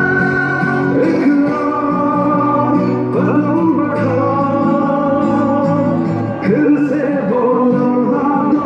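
Pakistani political campaign song played loud: male singing over an instrumental backing, the melody moving in held notes.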